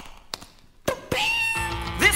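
A song starting in a DJ mix: a few sharp clicks about two a second, then a long, high, wavering cry about a second in, then the beat with a bass line kicks in near the end.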